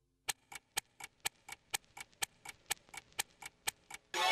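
Clock-style ticking sound effect of a film-leader countdown intro: sharp ticks about four a second, alternating louder and softer, stopping just before the end.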